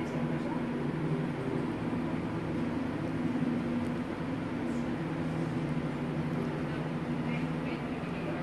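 Steady low mechanical hum over a faint hiss.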